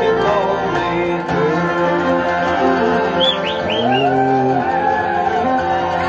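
Traditional Irish session music: fiddle and flute playing the tune together over strummed acoustic guitar, with the fiddle sliding between notes and quick high ornaments a little over three seconds in.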